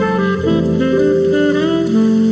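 Relaxed jazz: a saxophone plays a melody over sustained chords and a bass line, with a note bending up in pitch near the end.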